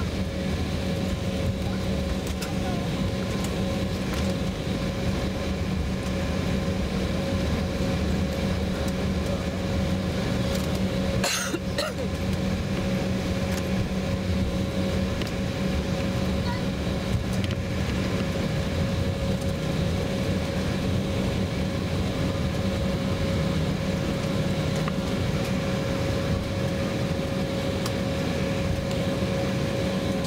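Steady cabin noise of a regional jet taxiing after landing: engines at idle and cabin air making a constant hum with a few steady tones. A brief click comes about eleven seconds in.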